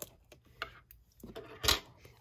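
Plastic shrink-wrap being picked at and peeled off a cardboard box by hand: scattered small crinkles and taps, with a louder crackle near the end.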